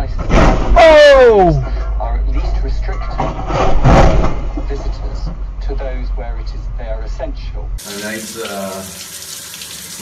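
People talking over a steady low car-cabin hum, with a loud shout that falls in pitch about a second in. About eight seconds in the sound cuts to a different recording: speech over the hiss of running water from a shower.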